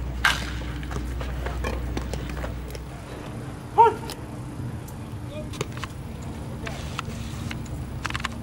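Outdoor ballpark ambience with distant players' voices. A sharp pop of a baseball into the catcher's mitt comes just after the start, and a short, loud shout comes about four seconds in.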